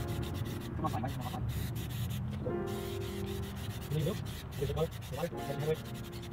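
Aerosol can of Plasti Dip rubber coating sprayed through a trigger handle, hissing in rapid, uneven spurts: the cold can is spraying spotty rather than in a steady stream.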